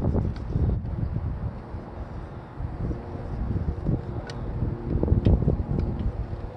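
Wind buffeting the microphone outdoors: an uneven, gusting low rumble, with a couple of faint light ticks about four and five seconds in.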